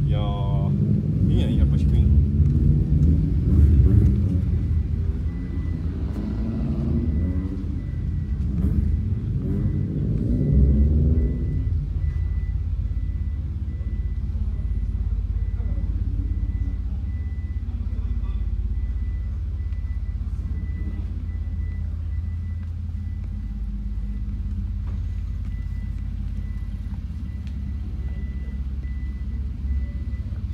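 People talking for about the first twelve seconds over a steady low rumble, which then carries on alone, with a faint thin steady high tone.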